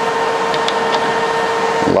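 Steady whirring hum of a running machine, with a few faint clicks as the ground cable's plug is pushed into the welder's front-panel socket.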